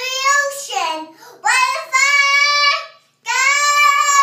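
Young girl singing, with a short phrase and then two long held notes split by a brief breath.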